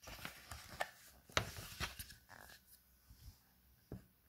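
Faint scattered clicks and rustles in a small room, several short ticks spread through the pause.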